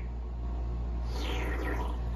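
Steady low hum of room tone, with a faint sip from a beer can in the second half.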